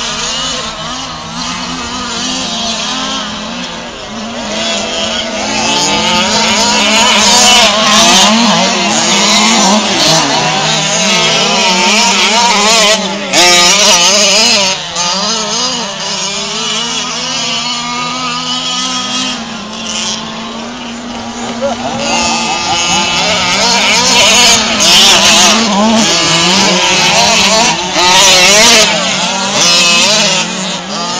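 Several 1/5-scale gas RC trucks' small two-stroke engines revving up and down together as they race, their pitches rising and falling and crossing one another, louder at times as the trucks come nearer.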